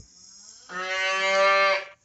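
A cow mooing once: one steady moo lasting about a second, starting a little before the middle.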